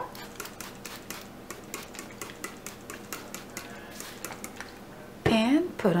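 Rapid run of short spritzes from a trigger spray bottle of alcohol misting the top of freshly poured cold process soap, several a second, stopping about five seconds in.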